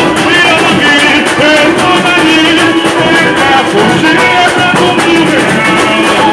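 Live samba played loud: a samba school drum section (bateria) keeps up dense, driving percussion, while a singer on a microphone carries the melody over it.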